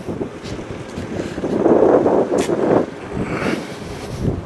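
Wind buffeting the microphone in a rough, uneven rumble, rising to a stronger gust in the middle.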